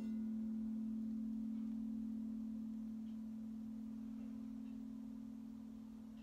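Crystal singing bowl ringing out after being played: one low steady tone, fading slowly, with a gentle regular pulse.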